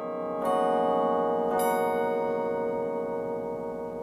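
Carillon chimes, specially tuned metal rods sounding like cast bells, amplified. Two strikes come about half a second and about 1.6 s in, and each leaves many ringing tones that hold and slowly fade.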